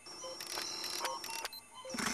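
Electronic spaceship sound effect: a steady high tone and a lower hum under short beeps at several different pitches.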